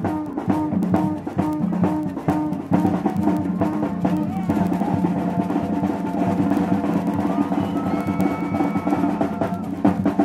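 Drum-led Brazilian-style dance music. A steady beat runs at first, then the drumming turns into a roll under held notes in the middle, and the beat returns near the end.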